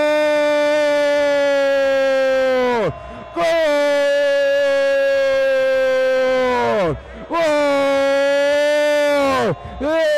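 Football radio commentator's drawn-out goal cry: one voice held loud and steady on a long 'gol', three long notes of about three seconds each, each dropping off sharply at its end, with quick breaths between and a fourth starting near the end. It is the call of a goal just scored.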